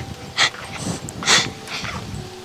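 A girl sobbing, with short breathy sobs about a second apart.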